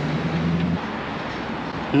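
Street traffic: a vehicle's low engine hum that stops about a second in, over a steady wash of road noise.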